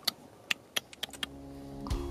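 A string of short, sharp clicks and taps as fingers knock against a thin plastic cup while reaching in for a small gecko. Soft background music fades in during the second half.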